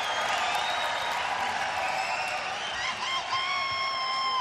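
Arena crowd cheering and applauding, a steady wash of noise; a held high tone joins about three seconds in.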